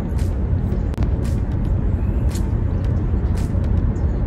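Road noise inside a moving car's cabin: a steady low rumble from engine and tyres. A sharp click recurs about once a second.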